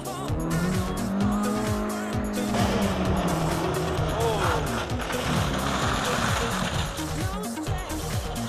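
Small rally hatchback, a Fiat Seicento, driven hard on a loose gravel surface: the engine is held at high revs for the first couple of seconds, its note sagging a little, then runs on amid tyre skidding and scrabbling.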